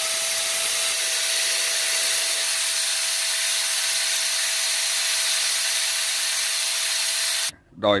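A mains-powered electric blower appliance runs steadily, a loud hiss with a steady motor whine, then cuts off suddenly about seven and a half seconds in.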